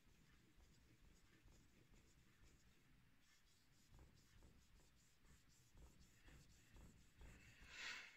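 Very faint scraping of a hair-shear blade being stroked along a wet whetstone, a little louder near the end.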